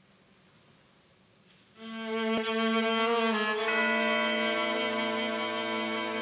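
A faint hall hush, then about two seconds in an orchestra's strings come in together on a long held chord. More sustained notes join it partway through.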